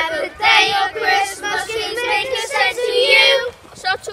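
A group of children singing together without accompaniment, in held phrases that stop shortly before the end.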